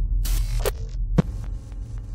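Steady low electrical mains hum, with a short swish about a quarter-second in and two sharp clicks, the second just after a second in.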